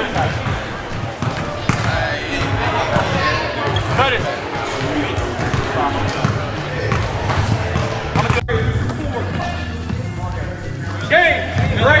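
Basketballs bouncing on a gym floor, repeated sharp thuds over the chatter of people around the court. The sound breaks off abruptly about eight seconds in, and loud voices call out near the end.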